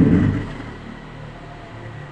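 A man's voice trailing off on a falling syllable, then a pause filled with a steady low hum and faint background noise.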